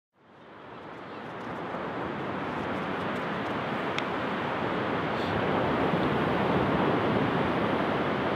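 Ocean surf: a steady wash of waves breaking, fading in over the first two seconds.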